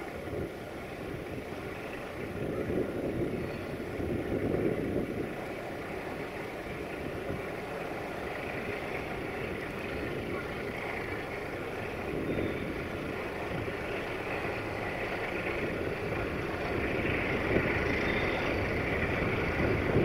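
Sulzer diesel engine of a Romanian 060-DA (LDE2100) diesel-electric locomotive running as it hauls a container freight train toward the listener. The sound is steady and grows louder toward the end as the locomotive comes closer.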